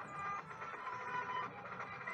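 Music from a satellite TV broadcast of a folk group, heard through a small TV's speaker at moderate volume, with several sustained notes overlapping.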